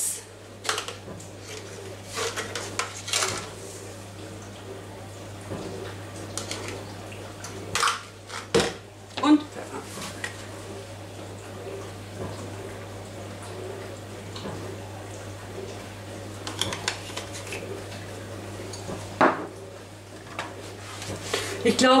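Metal spoon and whisk clinking and scraping in a small saucepan while a butter and sour-cream (Schmand) sauce is stirred, with scattered knocks of cookware, a few louder ones about three and eight to nine seconds in.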